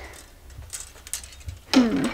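A few light clicks of plastic clothes hangers knocking together as they are gathered, then a short voice sound falling in pitch near the end.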